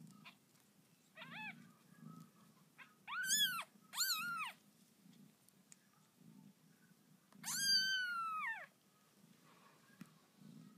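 Newborn kittens mewing while nursing: four high-pitched calls that rise and fall. There is a short faint one, two brief ones a second apart, and then a longer, louder one.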